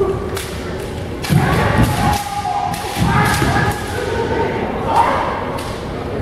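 Kendo bout: sharp impacts and thuds of bamboo shinai strikes and stamping feet on a wooden gym floor, with long, loud shouts (kiai) about a second in and again about three seconds in.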